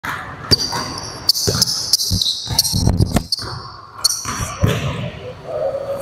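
Basketball bouncing on a hardwood gym floor: a string of sharp, irregular bounces with high-pitched squeaks among them, ringing in the large hall.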